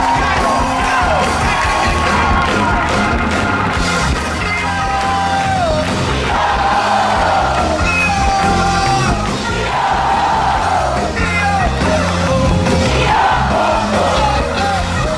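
A live band playing a rock-pop song through the PA, with a sung melody in repeated phrases over it and a crowd shouting and cheering along.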